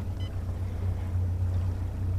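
Steady low hum of a boat's motor as the boat trolls along at about 3 mph, with a faint rush of wind and water over it.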